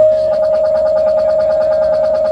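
A single note held steady on an amplified instrument in a live band, with a fast, even flutter running through it.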